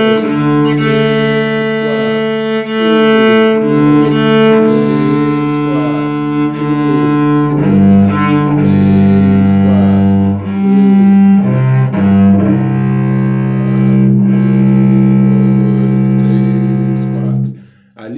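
Cello bowed in a slow practice exercise: held low notes in a rhythm of a quarter note, two eighth notes and a half note, the bow changing direction and moving between the lower strings. A long final note stops abruptly about half a second before the end.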